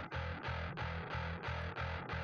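Gnarly distorted bass playing repeated notes in a steady, driving rhythm, about four a second, from a hard rock cue.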